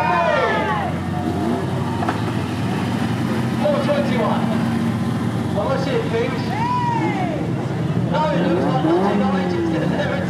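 Banger race car engines running at low revs with a steady low hum, as the cars idle and roll slowly on the track, with voices over the top.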